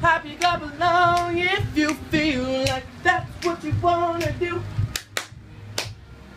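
A voice singing a pop melody in long, wavering held notes, with two sharp claps or snaps near the end.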